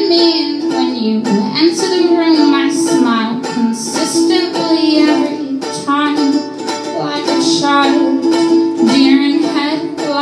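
Solo ukulele strummed steadily under a woman's singing voice holding long, wavering notes.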